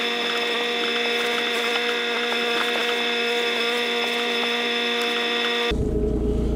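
A steady electronic hum of several held pitches at once, with a slight regular wobble. It starts and stops abruptly and replaces the car's road noise for about six seconds.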